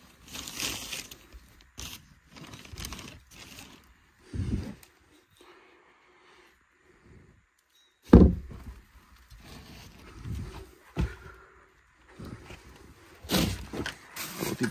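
Rummaging through a heap of junk by hand: rustling of cloth and plastic and scraping of objects, broken by a few knocks, the loudest a heavy thump about eight seconds in.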